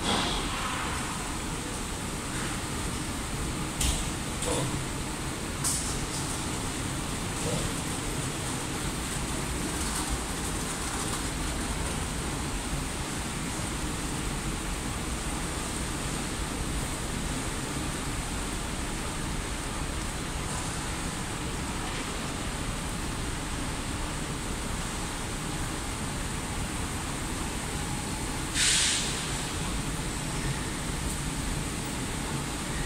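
Steady background noise of a large airport terminal corridor, with a few short hisses, the loudest near the end.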